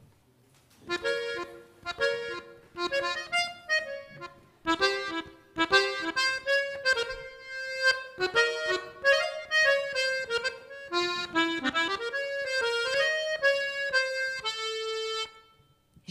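Piano accordion playing a solo instrumental introduction of short chords and melody notes, starting about a second in and ending on a held chord just before the end.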